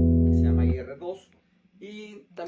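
Overdriven electric guitar: a Gibson SG with Seymour Duncan Phat Cat P-90-style pickups, played through a Nobels ODR Mini overdrive into a Boss IR-2 amp and cabinet simulator, holding a ringing chord. The chord is cut off sharply about three-quarters of a second in, and a man starts speaking near the end.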